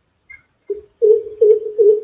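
A recorded bird call played back: a run of deep, resonant hoots at one steady pitch, about three a second, starting just under a second in.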